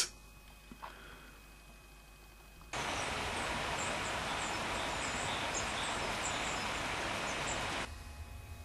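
Quiet room tone, then about three seconds in a cut to steady outdoor background noise, an even hiss, with faint, scattered high bird chirps over it.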